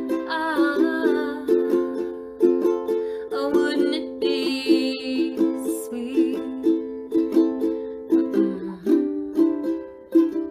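Ukulele strummed in a steady rhythm of chords, with a woman singing short phrases over it.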